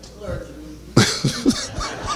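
A man coughing into a handheld microphone: a few short, sharp bursts starting about halfway through.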